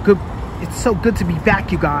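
A man talking, with road traffic running underneath.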